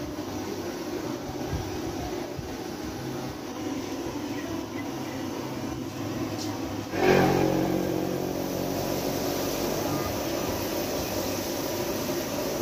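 A steady low hum under street-side clatter. About seven seconds in, the sound jumps louder and turns hissier as chicken chops deep-fry in a large wok of hot oil over a burner.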